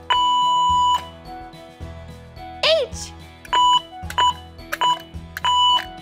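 Electronic beep tone of a Morse code push-button exhibit keyed by hand: one long beep, a dash finishing the letter A, then after a pause four short beeps, the dots of the letter H.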